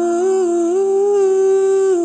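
A long held female vocal note, slowed down and drenched in reverb, rising a small step in pitch about two thirds of the way through and breaking off at the end.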